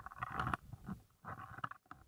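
Walking sounds on a damp bush trail: two rustling, crunching noises about a second apart, each lasting about half a second, as feet and the handheld camera move through leaf litter and scrub.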